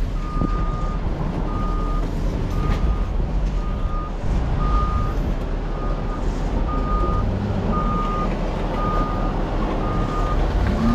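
A vehicle's reversing alarm beeps steadily about once a second, each beep a single high tone, over a continuous heavy low engine rumble.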